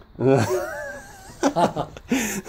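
Men's voices talking briefly, with a drawn-out, wavering voice sound in the middle.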